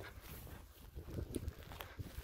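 Quiet open-air ambience: a low, uneven rumble typical of wind on a handheld phone microphone, with a few faint ticks near the middle and end.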